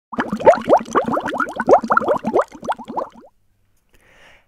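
Bubbling sound effect: a rapid run of short rising bloops, loudest at first and fading out about three seconds in.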